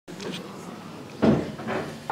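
A loud single thump about a second in, followed by a softer knock, over the low murmur of voices in an audience waiting in a hall.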